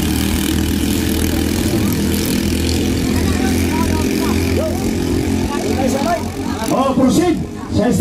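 Engines of several small 7 hp racing outrigger boats running flat out, a steady drone that thins out about five or six seconds in as the boats pull away; spectators' voices rise near the end.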